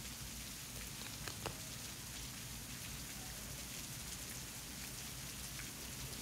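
Steady soft hiss with a few faint ticks and taps as metal tweezers lift butterfly stickers off a sticker sheet and press them onto a paper journal page.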